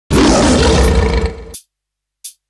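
A lion's roar used as a sound effect: one loud roar with a heavy low end, lasting about a second and a half, tailing off and then cutting off sharply.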